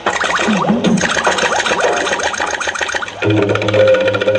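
Fisherman folk-song music with quick, even percussion strokes under gliding melodic lines. A little after three seconds in, the quick strokes give way to steady, sustained low notes.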